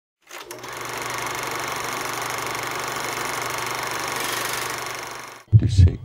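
A small motor buzzing steadily over a low hum, with a rapid even pulse, fading out about five seconds in.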